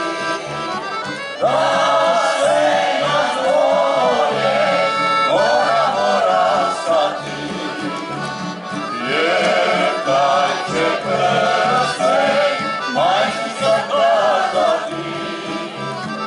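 A choir singing a folk-style song with accordion and guitar accompaniment, the voices moving in phrases with a short lull a little past halfway.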